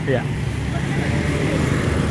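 Steady low engine rumble of a nearby motor vehicle, growing slightly louder.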